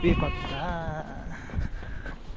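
A single bleat from livestock, one wavering call lasting about a second, followed by faint background noise.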